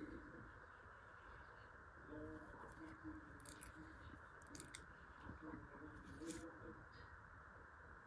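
Faint scratching of a fine-tipped drawing pen on paper, a handful of short strokes over quiet room tone.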